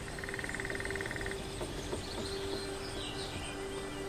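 Forest ambience: a steady background hiss, with a rapid trill lasting about a second near the start and brief bird chirps about three seconds in, over soft held low notes of ambient music.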